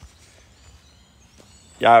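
Faint forest ambience with a few thin, high, distant bird calls during a pause, then a man's voice starts near the end.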